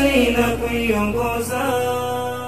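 The closing phrase of a Swahili nasheed: a male voice draws out the last sung line and settles into a long held note over a sustained backing drone. The deepest part of the drone drops away about three-quarters of the way through.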